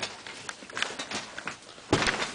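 Dogs moving about, their claws clicking and tapping irregularly on the floor.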